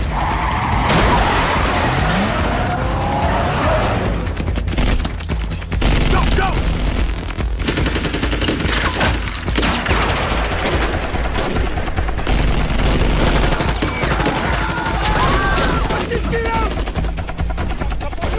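Action-film soundtrack of rapid automatic-rifle gunfire in long volleys, mixed with music and vehicle sounds.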